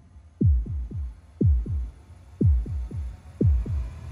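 Trailer sound design: deep booms that each drop quickly in pitch, pulsing in groups of a heavy hit followed by one or two lighter hits about once a second, like a slow heartbeat. A faint steady hum runs underneath.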